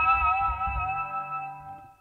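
Electric guitar's natural harmonics on the G, B and high E strings at the fifth fret, on a clean tone, ringing on with a subtle whammy-bar vibrato that makes the pitch waver, then fading away shortly before the end.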